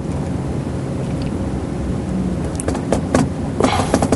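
Steady low room hum, with a few short clicks of laptop keys being typed in the second half.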